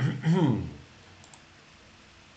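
A man's voice saying a word or two, then quiet room tone with two faint computer mouse clicks about a second later.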